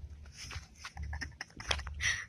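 Handling noise on a phone's microphone: scratchy rustles and a string of short clicks as the phone and fingers rub against hair, most of them between one and two seconds in. A low rumble of wind on the microphone comes and goes underneath.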